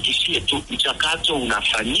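Speech only: a man talking in Swahili, with a thin, phone-like sound.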